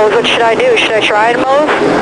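A man speaking throughout, with a steady background noise underneath.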